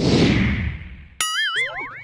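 Logo-sting sound effects: a rushing whoosh that fades over about a second, then a sudden wobbling cartoon boing with a rising zip that trails off at the end.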